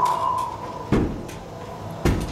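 A single heavy wooden knock about a second in, one of a slow, even series of knocks, with a faint held tone at the start.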